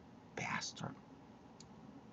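A woman's voice: a short, breathy, whisper-like murmur about half a second in, between spoken sentences, over quiet room tone.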